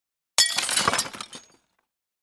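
Glass-shattering sound effect: a sudden crash about half a second in, with clinking fragments trailing off over about a second.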